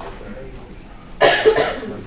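A person coughs loudly about a second in, a short cough in two quick bursts, over faint talk in the room.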